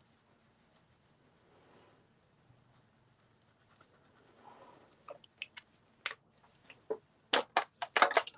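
Distress Crayons clicking against one another and the metal tin as a crayon is put back, a run of sharp clicks that grows louder over the last few seconds after a near-silent start.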